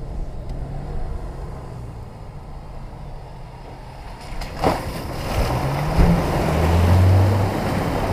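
Off-road SUV engine pulling the vehicle into and through a muddy water hole, with water and mud splashing around the wheels. The engine revs up about five seconds in and runs loud through the mud near the end, with a knock and a thump as the vehicle drops into the hole.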